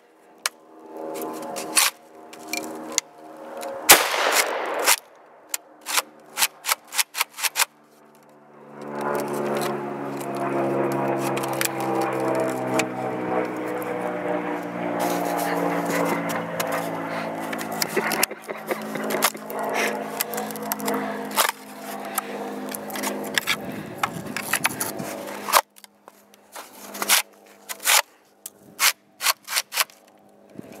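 Clacks and rattles of a UTS-15 bullpup pump shotgun's action and top cover being worked to clear a jam caused by packed mud, with one loud sharp knock about four seconds in and a quick run of clicks near eight seconds. From about nine to about twenty-five seconds a steady buzzing hum with many overtones runs under it, and more clicks come near the end.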